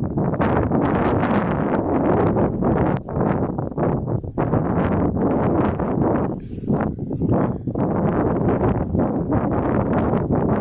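Wind buffeting the microphone: a loud, uneven rumble that drops off briefly a few times.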